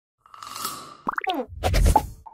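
Cartoon sound effects of an animated logo ident: a hissing swell with a held tone, then a quick run of springy pitch glides sliding up and down, ending in a loud low plop.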